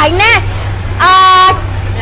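A vehicle horn honks once about a second in, a single steady-pitched blast lasting about half a second.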